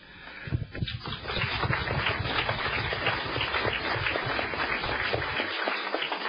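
Audience applauding, building up within the first second and dying away about five and a half seconds in.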